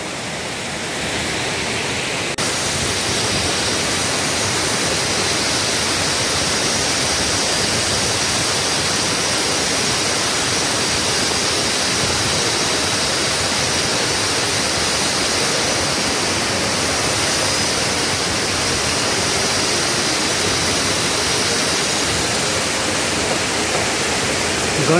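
Waterfall: the steady rush of water cascading down a rock face. It grows louder about two seconds in and then holds even.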